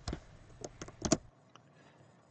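A few faint short clicks, the loudest about a second in, then near silence.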